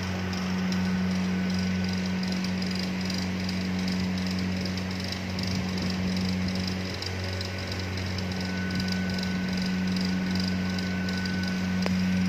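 Steady low electrical hum with a faint hiss over it, unchanging throughout; a thin high tone joins in over the last few seconds, and there is a single click near the end.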